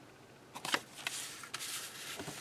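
Paper decal sheets being handled and set down on a paper instruction sheet: a run of short, irregular rustles and light taps starting about half a second in.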